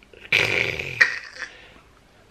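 A short breathy vocal noise from a person, then a second, sharper one about a second in that quickly fades away.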